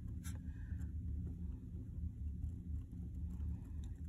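Pen writing on paper, with a couple of light ticks in the first second, over a low steady hum.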